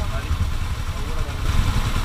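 Motorcycle engines idling steadily while the bikes are stopped.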